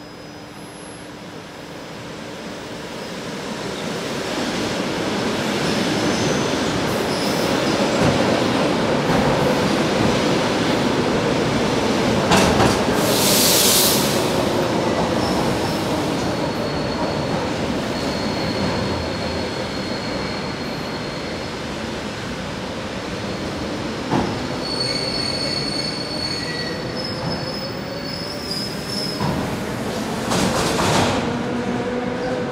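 ED4M electric multiple unit train running in along the platform, its noise building over the first several seconds, with a gliding motor tone, clacks over rail joints and high wheel or brake squeal, loudest about halfway through and again in the last few seconds.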